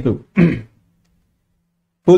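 A man's voice: the end of a spoken word, then a short, separate vocal sound about half a second in, the kind made in clearing the throat.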